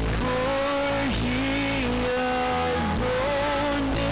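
Live worship band music: guitars, bass and cajon under long held notes that dip and slide in pitch about once a second or two.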